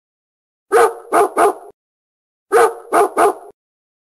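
A dog barking in two bursts of three barks, the second burst a match of the first.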